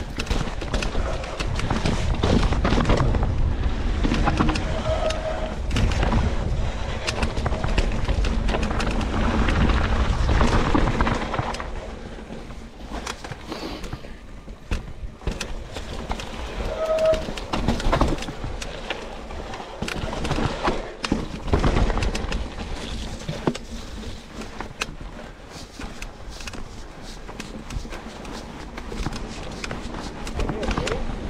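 Mountain bike riding down a rough trail: tyres on dirt and rock with a steady clatter of knocks from the bike over rocks and roots. A low rumble is strongest for the first twelve seconds or so, then the ride goes quieter and more clicky.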